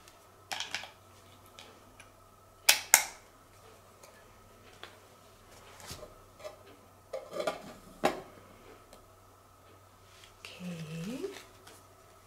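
Clicks and knocks of a small plastic object being handled and fitted together in the hands, the sharpest a close pair about three seconds in and a cluster around the eighth second.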